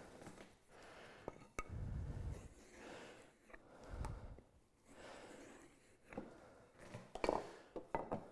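Marking gauge drawn along the edge of a wooden rail, scoring the groove line to prevent tearout: a series of soft scraping strokes, about one a second, with a small click early on.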